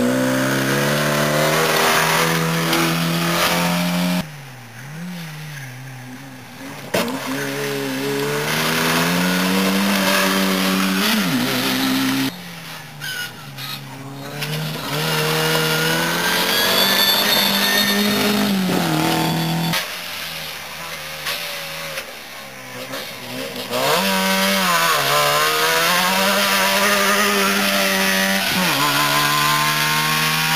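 Rally car engines at full throttle on a gravel stage, several loud spells of revving that climb in pitch and step between gears, each followed by a lift off the throttle and a quieter gap. A new engine note starts rising just before the end.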